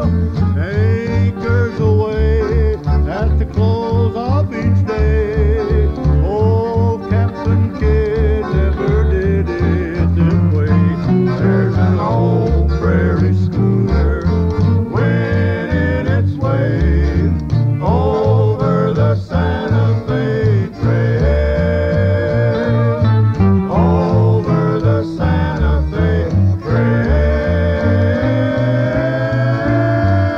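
Classic country string-band music: acoustic guitars over a bass line that steps between notes on a steady beat, with a gliding melody line and singing.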